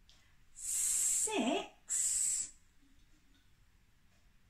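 A woman counting aloud, saying a drawn-out 'six' with long hissed s sounds at its start and end.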